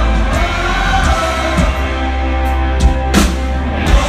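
Live rock band playing electric guitars over a drum kit, with a cymbal crash about three seconds in.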